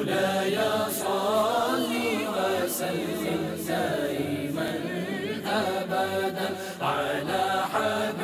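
Voices chanting an unaccompanied Islamic devotional hymn (naat), with long wavering notes that slide in pitch and short breaks between phrases.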